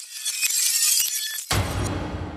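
Glass-shatter sound effect: a dense, high tinkling of breaking glass that swells to its loudest about a second in, then a sudden deep boom about one and a half seconds in that rings on.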